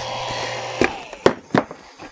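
Three sharp knocks, the middle one loudest, as the pump test rig is handled. Under them a steady running hum and hiss fades away.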